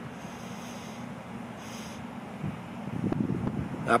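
Outdoor background: a steady low hum with wind buffeting the microphone, swelling a little about two and a half seconds in and again near the end.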